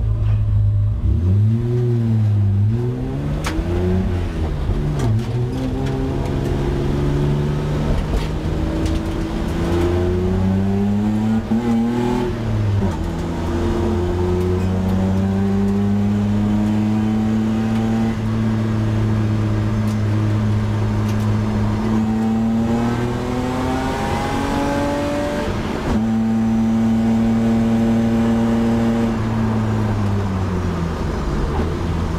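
BMW E30 320i's straight-six engine heard from inside the cabin as the car pulls away from a pit stop: revving up and down at first, then pulling steadily. The pitch drops sharply at upshifts about twelve seconds in and again near the end.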